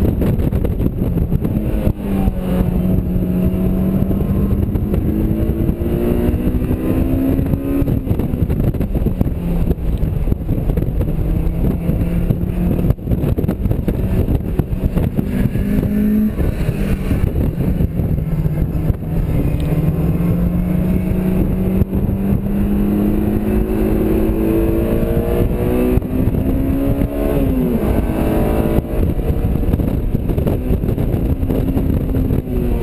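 Honda S2000's four-cylinder engine pulling hard through the gears, the revs climbing and then dropping at each shift several times, with a falling pitch near the end as it slows. It is heard from inside the open-top cabin, under heavy wind and road noise.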